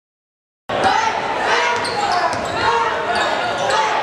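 Dead silence for under a second, then the sound of a basketball game in a gymnasium: crowd voices and shouting, with a basketball bouncing sharply on the hardwood floor several times.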